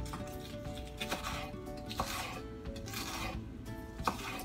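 Knife slicing through scallions on a wooden cutting board: a few short cutting strokes, roughly a second apart, under steady background music.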